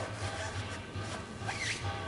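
Rustling and scraping of parts being handled as a turbocharger turbine housing is fetched, over a low hum that pulses a few times a second.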